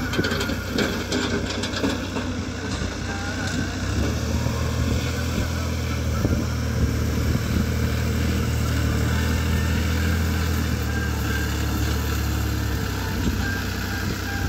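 New Holland 3630 tractor's diesel engine running under load as its front blade pushes soil: a steady deep drone that strengthens from about four seconds in until near the end.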